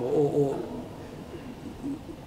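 A man's voice trailing off in a drawn-out syllable about half a second long, then a short pause with only faint room sound.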